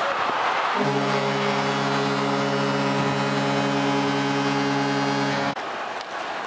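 Ice hockey arena horn sounding one long blast of about five seconds over crowd noise, starting about a second in and cut off suddenly near the end.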